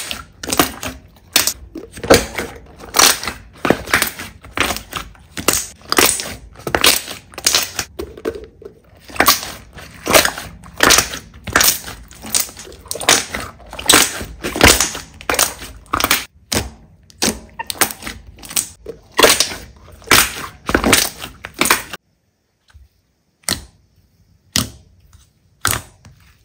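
Thick glossy slime being squeezed and stretched by hand, giving a rapid run of sharp pops and clicks, about two to three a second, as trapped air bursts. About four seconds before the end it goes almost silent, with two single pops after that.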